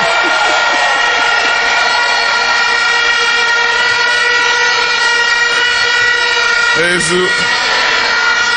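A loud, steady horn-like blare held at one fixed pitch for about seven seconds, with no rise or fall.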